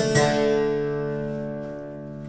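Steel-string acoustic guitar: a chord strummed once, about a fifth of a second in, and left to ring, fading steadily.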